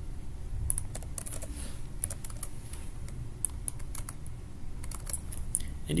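Computer keyboard and mouse clicks, a few at a time at irregular intervals, over a faint low hum.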